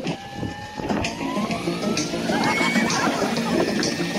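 Scale RC helicopter's motor and main rotor spooling up, a thin whine rising slowly and steadily in pitch.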